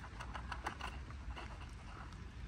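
Thick plastic bubble tea straw being worked up and down through the cup's sealed film lid, giving rapid, irregular clicks and crinkles over a steady low rumble.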